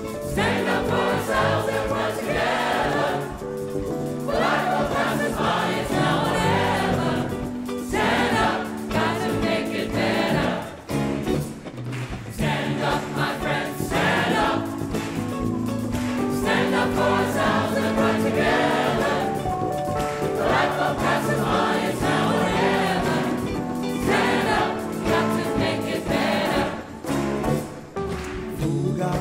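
A large mixed choir singing together in phrases a few seconds long, backed by a live band with keyboard and guitars.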